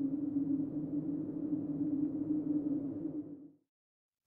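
A sustained low drone sound effect: one steady tone over a rough rumble, which stops a little past three and a half seconds in.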